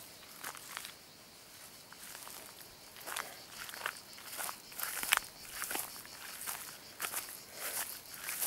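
Footsteps through tall grass and brush, each step a short crisp swish of stalks and leaves. The steps are sparse at first and settle into a steady walking pace, about one and a half a second, from a few seconds in.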